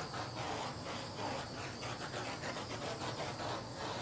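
A steady hiss with a faint, even pulsing about three times a second from a small handheld tool worked over a wet acrylic pour painting, cut off with a click at the very end.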